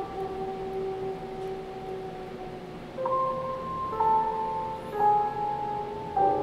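Piano chords: one chord rings and fades over the first three seconds, then new chords are struck about once a second. The harmony uses quarter tones, a 24-note-per-octave scale.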